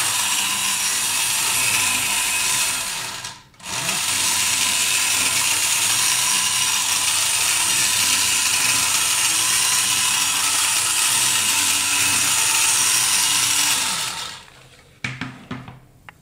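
Battery-operated 1950s Linemar R-35 tin robot's electric motor and gear train running as it walks, a steady mechanical whirring. It stops briefly about three and a half seconds in, runs again, then stops near the end, followed by a few clicks.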